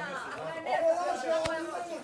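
Background chatter of several people talking over one another, with no single clear voice, and one sharp click about one and a half seconds in.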